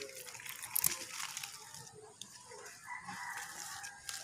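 Leaves and stems rustling and crackling as a hand works through dense foliage to pull plant cuttings, with the sharpest crackles about a second in.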